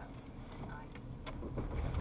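Low, steady rumble of a car's engine and tyres on the road, heard from inside the cabin while driving, with a couple of faint clicks.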